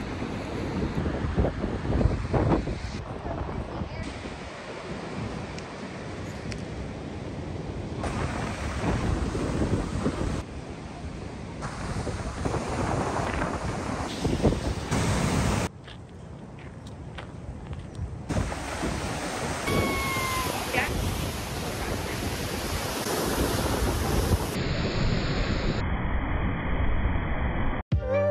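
Ocean surf washing on a beach, with wind buffeting the microphone. The sound changes abruptly several times between takes.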